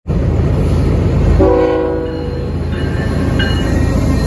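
Diesel train rumbling, with a short multi-note locomotive horn chord about one and a half seconds in.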